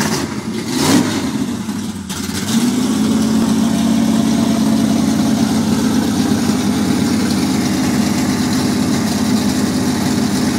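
1978 Plymouth Road Runner's 340 V8 running, with a quick rev about a second in and then a steady, even idle.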